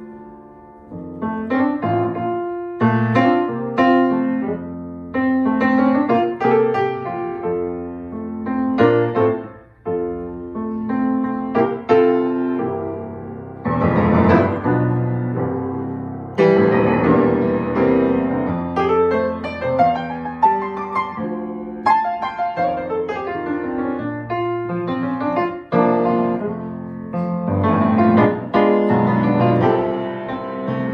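A rebuilt 1971 Yamaha G2 grand piano, newly restrung, played as a continuous solo: chords and melody, each note struck and ringing out, with a fuller passage in the middle.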